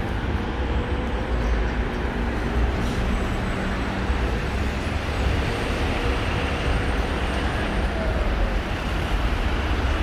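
Steady road traffic noise from cars on a multi-lane road below, a continuous hum with a strong low rumble.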